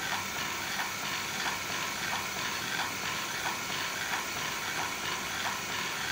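ProMinent Sigma motor-driven diaphragm dosing pump running in automatic mode at a stroke rate of 90 per minute: a faint regular stroke about every two-thirds of a second over a steady hiss.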